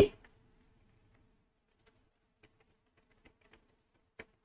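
Faint, scattered keystrokes on a computer keyboard as a line of text is typed, over a faint steady hum.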